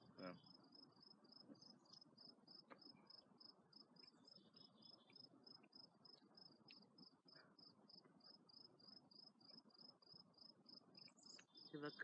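Faint, steady chirping of a cricket, an even pulse about three times a second that keeps up without a break.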